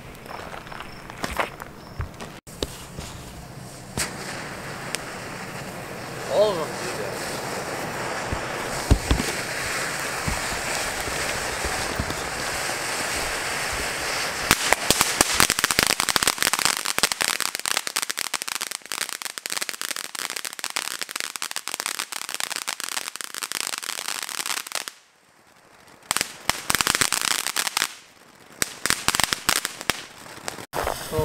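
Ground fountain firework spraying sparks: a steady hiss that fills with dense, rapid crackling from about halfway through. The sound drops out briefly near the end, then the crackling resumes.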